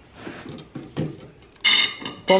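Hand oil pump worked in a bottle of oil: a few scraping strokes of the plunger, then a short, loud hiss near the end.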